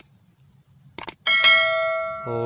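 A couple of short mouse-click sounds about a second in, then a bright bell ding that rings on and slowly fades: the sound effect of an overlaid YouTube subscribe-and-notification-bell animation.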